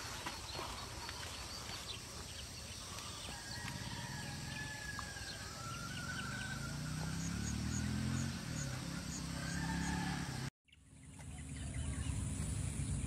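Rural outdoor background with roosters crowing in the distance and a short run of high chirps. Near the end the sound drops out for a moment, then a different outdoor background starts.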